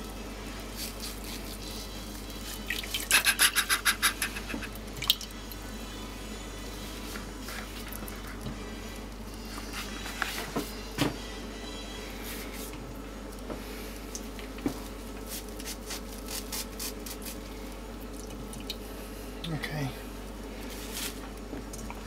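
Water dripping and splashing in a glass bowl as a waterlogged piece of nappy lining is dipped and lifted. There is a quick run of splashes about three seconds in and scattered drips after, over a steady low hum.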